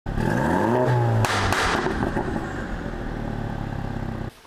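Logo sound effect of an engine revving up, its pitch rising for about a second, then a sharp hit followed by a long rumble that slowly fades.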